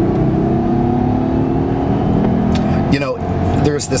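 Twin-turbocharged V12 of a 2009 Mercedes-Benz S600 pulling hard under heavy throttle, a steady engine note heard from inside the cabin as the car gains speed quickly.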